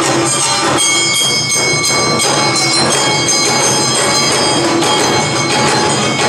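Awa odori hayashi band playing the fast two-beat dance rhythm: shinobue bamboo flutes holding high notes over shamisen, taiko drums and a clanging metal kane.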